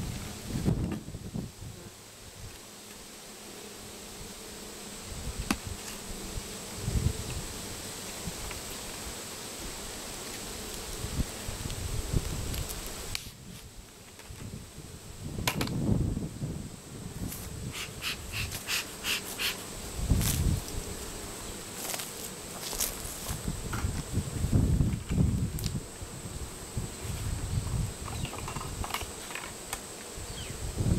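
Honey bees buzzing around an open hive. Irregular bumps, scrapes and a run of sharp clicks come from a plastic feed pail being gripped and lifted off the hive cover.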